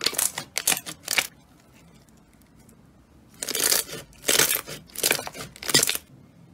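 Hands squeezing and kneading glossy clear slime, giving bursts of sticky popping and clicking: a cluster in the first second or so, then a pause, then several more from about three and a half seconds in.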